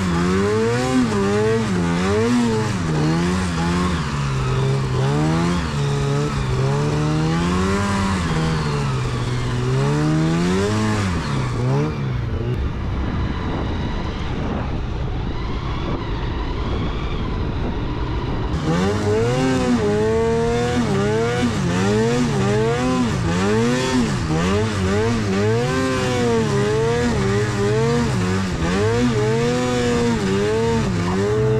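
Arctic Cat Catalyst snowmobile's two-stroke engine revving up and down repeatedly as the sled is ridden through deep powder, the pitch rising and falling every second or two. Midway there are a few seconds where it sounds duller and rougher before the revving picks up again.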